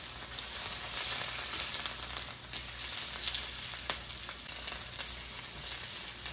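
Sesame-crusted ahi tuna steaks sizzling steadily in hot vegetable oil in a stainless steel skillet, searing at medium-high heat. A few sharp clicks of metal tongs on the pan as the steaks are turned.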